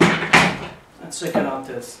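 A man's voice speaking in short bursts, with a knock at the very start. No guitar is playing yet.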